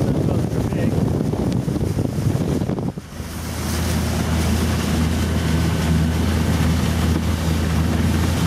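Electric-converted Glastron speedboat running at cruising speed, about 35 km/h: wind buffeting the microphone and water rushing along the hull over a steady low drivetrain hum. The noise drops briefly about three seconds in, then builds back up.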